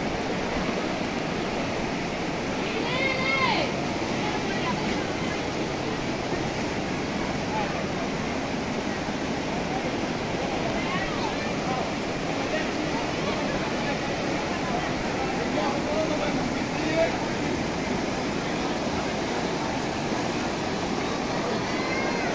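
Fast-flowing floodwater rushing steadily through a flooded street, a continuous even rush of water.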